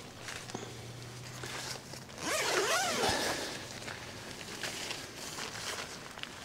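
Kuiu Storm Star tent's door zip being pulled open by hand: a long rasping unzip, loudest about two seconds in.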